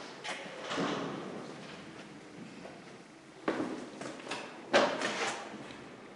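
Scuffs and two sharp knocks in a bare concrete room, the second, about a second after the first, the loudest.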